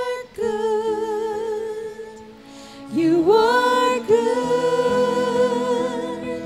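Worship music: a singer holding long notes with vibrato over steady held accompaniment chords. The music thins out about two seconds in, and the voice slides back up into a loud held note about a second later.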